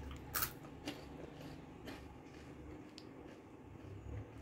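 A bite into a crunchy cassava-starch biscuit (biscoito de polvilho) about half a second in, followed by faint chewing with a few small crunches.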